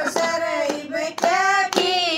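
Women's voices singing a devotional bhajan, unaccompanied, with steady hand claps keeping the beat.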